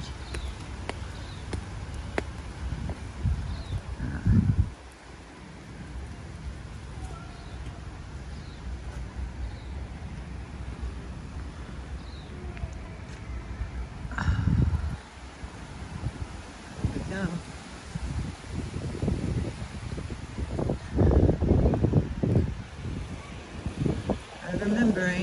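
Outdoor ambience of a rainy riverside: wind buffets the microphone in low rumbling gusts, around 4 s, 14 s and again from about 19 to 22 s. Faint bird chirps sound now and then.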